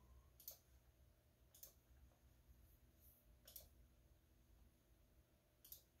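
Four faint computer mouse clicks, spaced one to two seconds apart, over quiet room hum.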